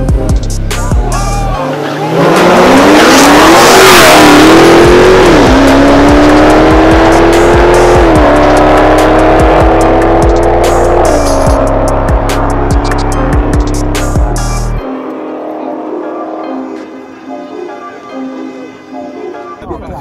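Two cars, a BMW M240 and a stock Dodge Challenger Hellcat, launching hard from a standing start side by side. There is a loud burst of noise at the launch, and an engine note climbs through the gears with three short dips at the upshifts before cutting off suddenly about fifteen seconds in. Background music with a beat runs under it.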